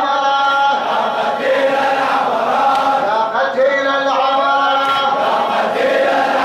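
A large crowd of men chanting a Shia mourning latmiya in unison, loud and steady, with long held notes.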